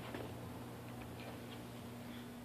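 Quiet room tone: a steady low hum with a few faint, light ticks scattered through it.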